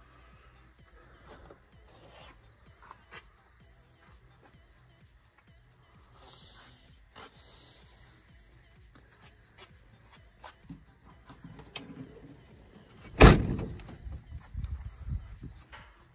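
Hummer H2's rear swing-out cargo door shut with one loud slam about three seconds before the end, followed by a couple of seconds of fainter knocks. Before that, only faint clicks and rustling.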